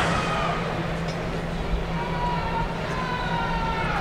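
Stadium crowd ambience with a steady low hum, with faint drawn-out high tones that fall slightly in pitch, heard mostly in the second half.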